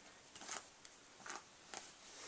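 A hairbrush drawn through a child's hair as it is smoothed into a ponytail: faint, short scratchy strokes, about three of them, a little under half a second apart.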